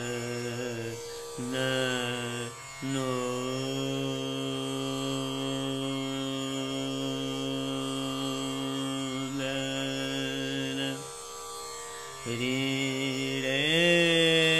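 Male dhrupad alap in raga Bageshri: a solo voice sings slow, unaccompanied-by-drum phrases, sliding up into each note and holding one long note for about eight seconds before a short break and a new rising phrase near the end. A tanpura drone sounds softly underneath.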